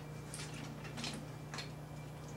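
Faint, irregular clicks and ticks of metal hardware being handled as the grip head on a light stand is clamped down on the fixture's baby pin, over a steady low hum.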